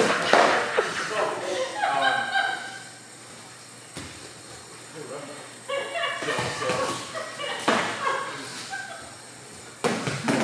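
Indistinct voices echoing in a large gym hall, with a few sharp thumps from sparring with foam pool noodles, one right at the start and one near the end.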